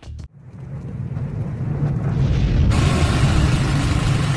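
Logo-reveal sound effect: a low rumble swells steadily louder, and a loud hissing crash-like noise breaks in sharply near the end.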